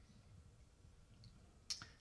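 Near silence: room tone through the microphone, with one short click near the end.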